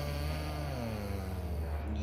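Basset hound giving a long, low, drawn-out groan that slowly falls in pitch, the sound of a tired dog settling. A steady low hum runs underneath.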